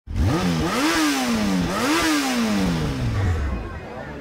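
Off-road buggy engine revving, its pitch climbing and falling three times, then falling away slowly as the throttle is released.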